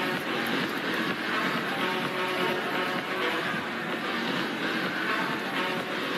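Steady crowd noise of spectators in an indoor sports arena between volleyball rallies, an even hum of voices with faint music underneath.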